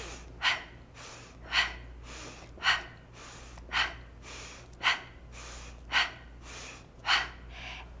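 A woman's sharp breaths out, seven in a row about one a second, in time with her tricep dips: hard breathing from a high-intensity workout.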